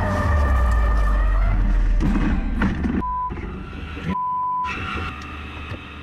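The electric drivetrain of a Nio EP9 supercar whining at speed over a deep road rumble, which fades after about two seconds. Two short, sharp electronic beeps follow, about three and four seconds in, and then more whine.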